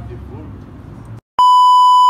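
A loud, steady, high-pitched censor bleep of about three quarters of a second, coming in right after the sound cuts out to silence just past a second in. Before it, faint voices over a low rumble.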